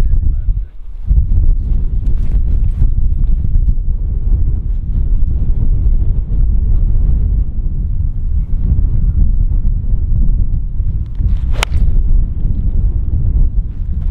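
Wind buffeting the microphone, a loud steady low rumble, with a single sharp crack near the end as a golf club strikes a teed ball.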